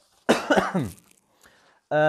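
A man coughing briefly, a harsh cough falling in pitch, about a third of a second in.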